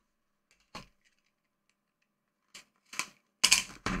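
Cardboard mystery box and paper envelopes being handled on a tabletop play mat: a short click about a second in, then a few sharp clicks and knocks near the end as the box is set down.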